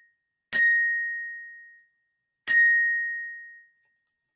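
Glockenspiel (orchestra bells) struck twice on the same high note, about two seconds apart, each note ringing out and fading over about a second: the last notes of a solo.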